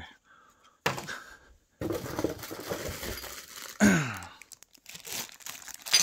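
Clear plastic parts bag crinkling and rustling as it is picked up and handled, after a single sharp knock about a second in.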